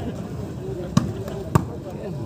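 A volleyball being struck by hand twice, about half a second apart, the first about a second in, in a rally of play.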